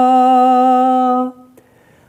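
A man's unaccompanied voice reciting a naat, holding one long steady note that ends just over a second in, followed by a short pause.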